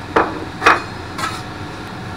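A metal spatula clacking and scraping on a steel flat-top griddle: a few sharp knocks about half a second apart and a brief scrape as diced onion and jalapeño are pushed around.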